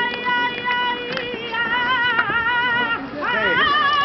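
A woman singing a saeta, the unaccompanied flamenco devotional song: long held notes with wavering, ornamented pitch. There is a short break about three seconds in, then a new phrase begins with a rising slide.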